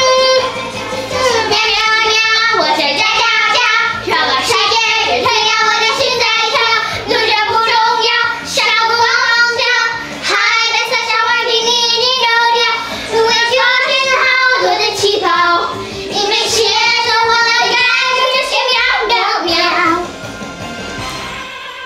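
Young girls singing a Mandarin pop song along with its music, in phrases broken by short pauses.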